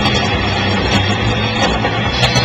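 A rock band playing live, loud: electric guitars and bass over a drum kit, with cymbal hits cutting through every fraction of a second.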